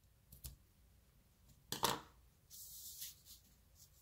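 Scissors snipping the ends of a linen-thread bow: a light click, then one sharp snip about two seconds in, followed by a brief papery hiss of card stock sliding across the work mat.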